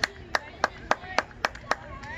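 A person clapping close by: seven sharp, evenly spaced claps, about four a second.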